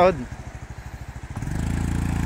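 Small motorcycle engine running at low revs with an even low putter, then revving up and getting louder about one and a half seconds in.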